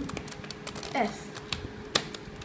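Plastic Rubik's cube being turned by hand: a run of small clicks and clacks as its layers are twisted, with one sharper click at the end.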